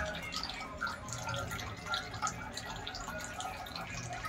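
Water from a wall tap dripping and trickling into a metal pot already full of water: a quick, irregular patter of small drips.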